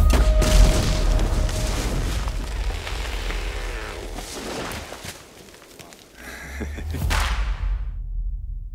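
A scoped rifle shot that sets off a large explosion, its rumble dying away over several seconds. After a short lull, a second sudden loud hit comes about six seconds in and then cuts off.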